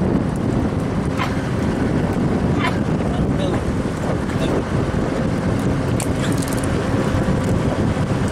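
Steady low rumble of a fishing trawler's engine running, mixed with wind on the microphone, with a few sharp clicks scattered through it.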